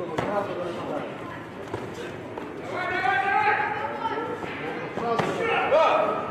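Voices shouting in a large hall, long drawn-out calls near the middle and the end, with a few sharp thuds of kicks and punches landing on padded gear.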